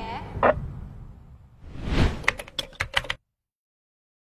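End-card sound effects: a short whoosh about half a second in, a swelling swish near two seconds, then a quick run of sharp clicks like keyboard typing, before the sound cuts off suddenly.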